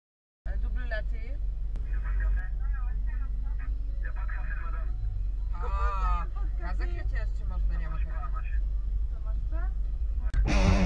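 Women chatting in French inside a car cabin over a steady low rumble, starting abruptly about half a second in.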